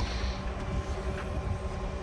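A Dodge Journey's rear liftgate is unlatched with a faint click and swings up on its gas struts with a brief soft hiss. This sits over a steady low outdoor rumble.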